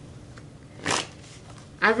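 A single brief rustle of tarot cards being handled, about a second in, against quiet room tone.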